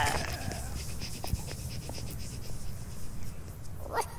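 Sound effects of an animated dog: quiet breathing with a few faint taps over a low steady rumble, ending in a brief rising whine.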